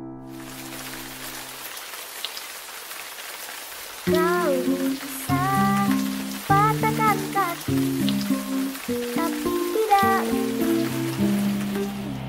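Steady rain hiss. About four seconds in, music comes in over it: a run of low notes beneath a higher melody line that slides in pitch.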